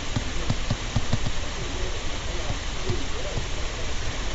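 Steady hiss of the recording's microphone background noise, with a few faint short clicks scattered through it.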